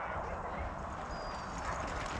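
A four-dog team running on a dirt trail, paws hitting the ground, as it pulls a wheeled rig past, with a low rumble of the rig rolling.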